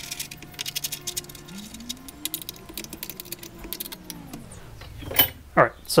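Rapid small metal clicks and ticks of a screw being turned back into a metal corner square on a CNC wasteboard, thinning out after the first few seconds.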